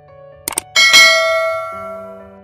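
Sound effects of a subscribe-button animation: two quick clicks about half a second in, then a bright bell-like notification chime that rings out and slowly fades, over soft background music.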